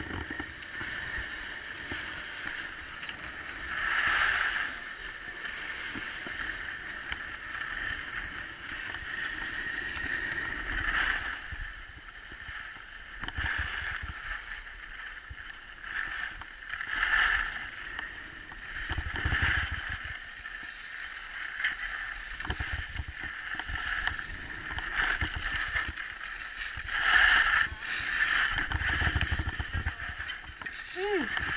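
Skis sliding over packed snow on a downhill run, with louder swishing swells every few seconds as turns are made, and wind rumbling on the action camera's microphone at times.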